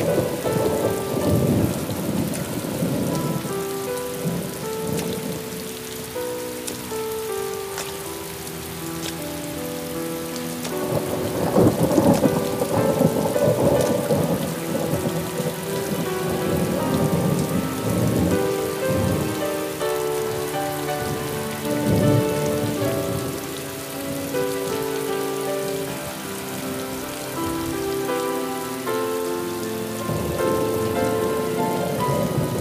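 Heavy rain pouring steadily, with rolls of thunder rumbling up several times, the loudest about twelve seconds in, over a slow instrumental melody.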